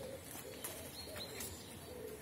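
A dove cooing faintly: a few short, low, hooting notes.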